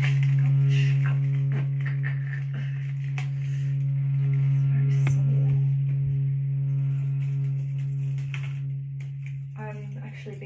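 A steady low drone with evenly spaced overtones runs under the crackling and rustling of dried flower stems and grasses being handled and bunched into a bouquet. Near the end there is a brief bit of voice.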